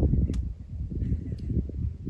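Wind buffeting the microphone: an uneven, gusty low rumble, with a couple of faint clicks.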